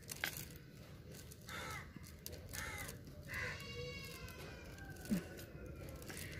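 Crows cawing faintly, three or four calls about a second apart, with a short knock near the end.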